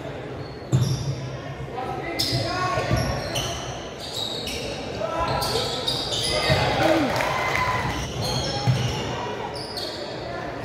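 A basketball bouncing on a hardwood gym floor during play, with sharp knocks and short high squeaks of sneakers on the court, over voices in the gym.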